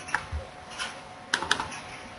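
A few short, sharp clicks of a computer mouse, ending in a quick double-click about one and a half seconds in.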